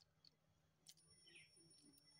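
Near silence: quiet outdoor background with one faint click about a second in and a faint high steady whine in the second half.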